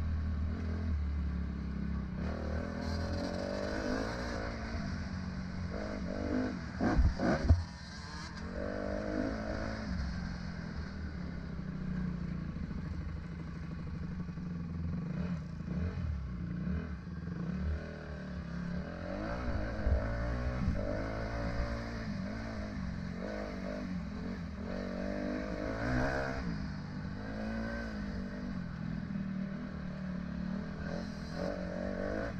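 Dirt bike engine running as heard from the rider's helmet, its pitch rising and falling with the throttle over a rough dirt trail, with clattering from the bike. A few loud knocks come about seven seconds in.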